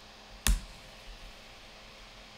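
A single sharp keystroke on a computer keyboard about half a second in, the Enter key pressed to run a terminal command, followed by faint steady background hiss.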